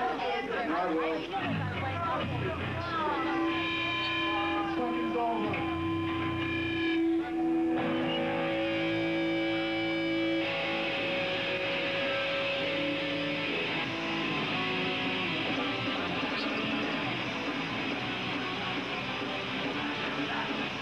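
Electric guitars holding long, steady single notes over crowd voices, then a dense distorted guitar sound fills in about ten seconds in as the hardcore band starts playing.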